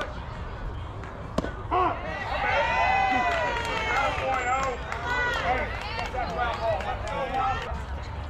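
A single sharp pop of a baseball into the catcher's mitt, then several young players' voices shouting and calling out over one another for several seconds.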